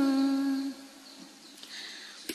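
A chanting voice holds the last note of a verse line, one steady pitch, and fades out under a second in. A quiet pause follows.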